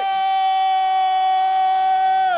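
A man's voice holding one long, loud, steady high note into a microphone: an emcee drawing out the last word of his welcome announcement as a hype call.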